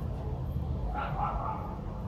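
A dog giving a short bark about halfway through, over a steady low rumble.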